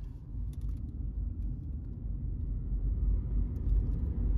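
Steady low rumble of a car driving, the engine and road noise heard from inside the cabin.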